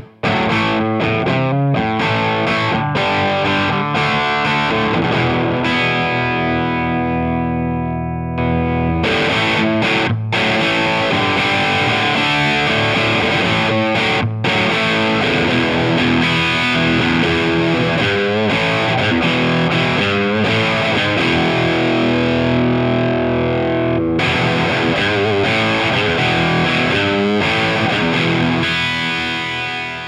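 Electric guitar played through an amp set to a crunch tone: overdriven chords and riffs, first with the amp alone. After a short break about eight seconds in, the sound is fuller and brighter as the Way Huge Saucy Box overdrive thickens the crunch.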